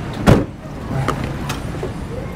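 A car door shuts with a single solid thud about a quarter of a second in, followed by two lighter clicks, over the low steady hum of the small saloon's idling engine.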